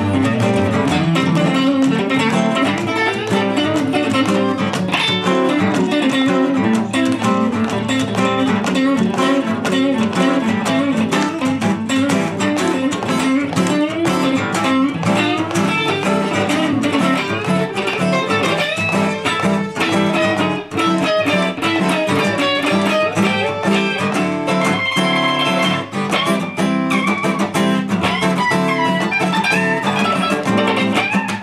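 Fender Stratocaster electric guitar playing quick, busy single-note lines over a strummed acoustic guitar, without a break.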